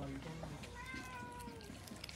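A cat meowing once, a single drawn-out meow starting a little under a second in and sliding slightly down in pitch.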